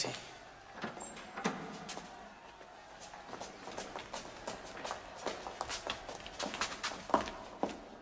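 Footsteps on a stone floor with irregular sharp clicks and knocks, several a second, as people walk past lines of armed guards.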